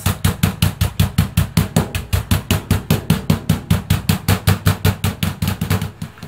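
A wooden surikogi pestle tapping quickly and evenly, about five or six blows a second, on chicken breast pieces under plastic wrap on a cutting board. The tapping is pounding the meat flat to break up its fibres so that the seasoning soaks in.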